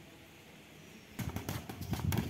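Faint outdoor background, then a little over a second in, a sudden run of sharp, rapid slaps and thuds: boxing gloves striking during partner punching drills.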